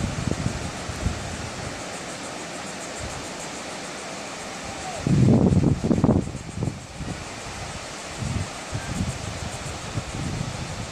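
Ocean surf on a sandy beach as a steady wash of noise, with wind buffeting the microphone in low rumbles, loudest in a gust about five seconds in that lasts a second or so.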